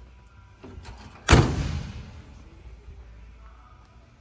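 The steel driver's door of a 1966 Chevrolet C10 pickup being shut, closing with one solid slam a little over a second in that dies away quickly, after a few faint clicks.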